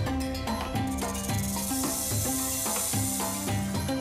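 Background music with a steady rhythmic beat, overlaid from about a second in until shortly before the end by a long, high snake hiss used as a sound effect.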